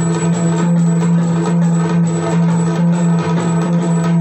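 Live Indian devotional music: a steady low drone holds under a melodic instrumental line, with no clear drumming in these seconds.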